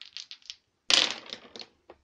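A handful of dice rolled onto a tabletop. A few light clicks come first, then a loud clatter about a second in, and the dice rattle and tumble to a stop, with one last click near the end. They scatter widely.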